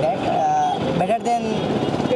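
Voices talking over the steady noise of street traffic.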